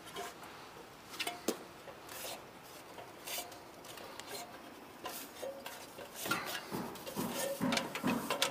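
Scattered light clinks and taps of hands and shoes on an aluminium extension ladder's rails and rungs during a climb down, a few with a brief metallic ring. The knocks come closer together and louder near the end.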